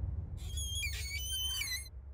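Cartoon sound effect: high-pitched whistling tones that step up and down in pitch for about a second and a half, over a low rumble.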